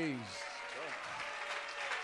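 A congregation clapping and applauding, with a few scattered voices in it; a man's voice trails off just at the start.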